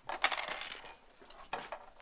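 Backgammon checkers clicking and clattering on a wooden board: a quick run of clicks in the first second, then another short clatter about a second and a half in.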